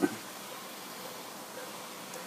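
Steady, featureless background hiss with no distinct events.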